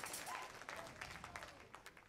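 Congregation clapping, a spread of scattered claps that thins out and fades away over the two seconds, with a brief voice calling out about a third of a second in.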